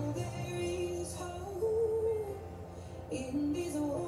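A song with a female singing voice, the melody moving in long held notes.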